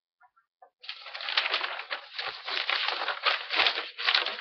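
Close rustling and brushing, like handling near the microphone: a dense run of quick, unpitched strokes starting about a second in.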